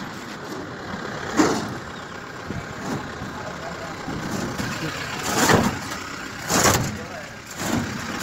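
Truck engine running amid street noise, with voices in the background and three short loud noise bursts about one and a half, five and a half and six and a half seconds in.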